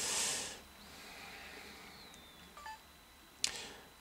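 Quiet handling noise of a touchscreen mobile phone being tapped with a finger: a short hiss at the start, then faint clicks and a short beep-like tone a little after halfway, with one sharper tap near the end.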